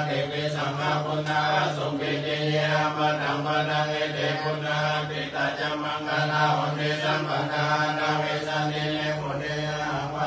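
Buddhist chanting in Pali, voices reciting together on a steady low monotone without a break.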